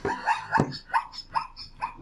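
Zebra call: a run of short, high barking yelps, about five in two seconds.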